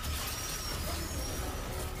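Film sound effects of a flying helicarrier: a steady deep rumble under a rushing, airy hiss like wind and engines at altitude.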